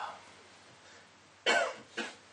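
A man's cough: one short, sharp cough about a second and a half in, followed by a brief smaller one.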